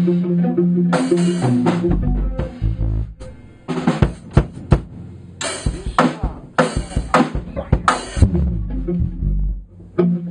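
Electric guitar and a drum kit playing together: held guitar chords at the start, then a stretch of drum hits and cymbal crashes over low bass notes.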